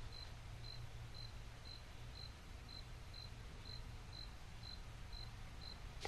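Faint room tone with a steady low hum and a short, high-pitched pip repeating evenly about twice a second.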